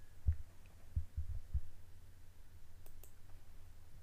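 Low steady hum with several dull low thumps in the first two seconds and a couple of faint clicks near the end.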